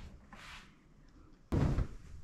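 A large quilt being flung out and spread over a bed: a sudden whump of heavy fabric about one and a half seconds in, after a quiet stretch.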